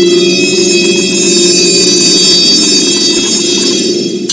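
A loud, steady high metallic ringing over a low rumbling noise. It cuts off at the end.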